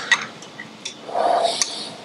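Light metallic clicks and ticks from handling the steel parts of a Model T brake drum and drive plate assembly, with a sharp click near the start and a brief rubbing sound from about a second in.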